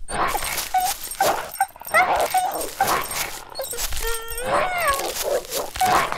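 A dog whining and yelping: several short cries that glide up or down in pitch, the longest about four seconds in and falling, with quick clicking noises between them.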